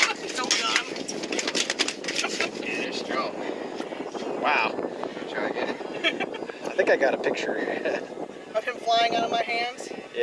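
Several people talking indistinctly over a steady background noise, with a clearer voice near the end.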